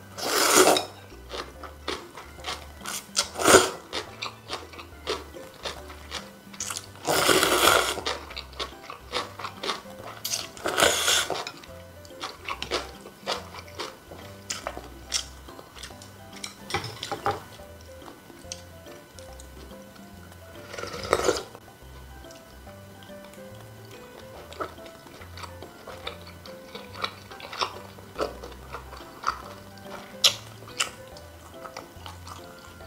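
Close-miked slurping of thin cold noodles and wet chewing: about five slurps, the longest lasting about a second, with soft clicky chewing sounds in between.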